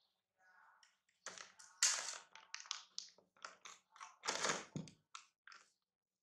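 A quick, irregular run of crackling and rustling handling sounds, like something being crinkled and tapped close by. It is loudest about two seconds in and again around four and a half seconds, then thins out to a few single clicks.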